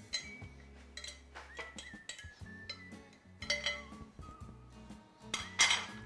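A spatula scraping and tapping chopped vegetables off a ceramic dish into a glass bowl, then stirring them, with scattered light clinks and a louder scrape near the end, over soft background music.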